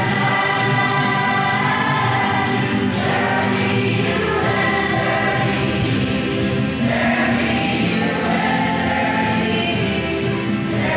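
A rondalla ensemble singing a gospel song together in chorus, accompanied by the group's own ukuleles.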